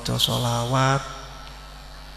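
A man's voice preaching in a sing-song delivery: one drawn-out phrase in the first second, rising in pitch at its end, then a pause of about a second with only a faint steady hum.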